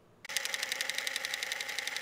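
A movie film camera running: rapid, even clicking over a steady whir. It starts suddenly about a quarter of a second in.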